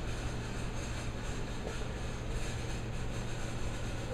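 Steady background room noise: a constant low hum with an even hiss, with no distinct event.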